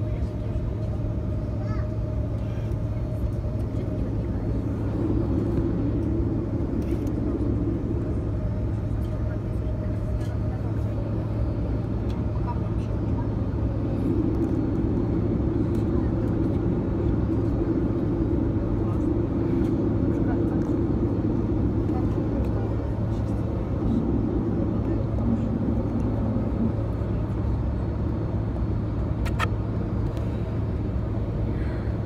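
Steady low drone inside the cabin of an Airbus A330-223 on the ground, from its Pratt & Whitney PW4000 engines at idle, with a single sharp click near the end.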